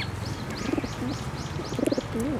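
Birds calling: a falling whistled note, then a quick run of short high chirps, about five a second. Beneath them, pigeons coo low twice.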